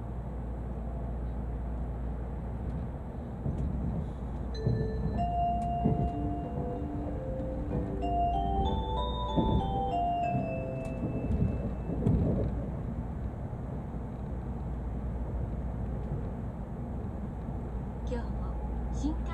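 Shinkansen onboard announcement chime: a short electronic melody of stepped notes that climbs and then falls back, starting about four and a half seconds in and lasting some six seconds. It plays over the steady low rumble of the N700 train running at speed.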